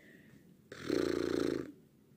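A person's short raspy hum, rough and pulsing, about a second long, starting a little under a second in.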